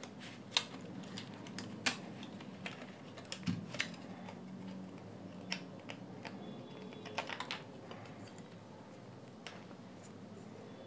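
Plastic clicking as the outer shell of a JBL Flip 2 Bluetooth speaker is pried and pulled off its body: scattered sharp clicks, some in quick little clusters.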